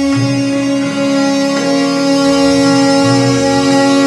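Gurmat kirtan in Raag Gond: harmonium and bowed taus sustaining long, steady held notes, with the tabla largely quiet.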